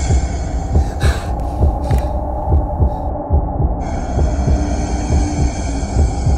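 Horror soundtrack built on a deep, heartbeat-like thumping at roughly one and a half beats a second over a low hum. The higher sounds drop away for about three seconds in the middle, leaving the thumps and hum nearly alone, then come back.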